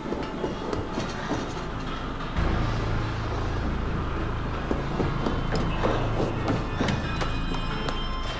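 Tense film score and sound design: a low droning rumble comes in suddenly about two and a half seconds in and holds, with scattered metallic clatter and knocks over it.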